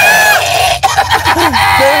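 Men laughing hard and loudly together, beginning with a high-pitched held cry of laughter that breaks into gasping, cackling laughs.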